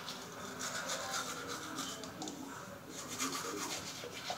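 Manual toothbrush scrubbing teeth: quick back-and-forth rasping strokes, in two spells with a short lull in the middle.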